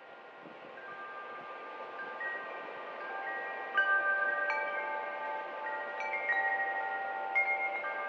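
Chimes ringing: scattered ringing tones struck at irregular times and left to sustain over a soft hiss, fading in and growing louder.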